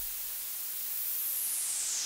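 Synthesized white noise played through a resonant filter from SuperCollider. The filter's bright band sits very high, a thin hiss, then begins gliding down in pitch about a second in.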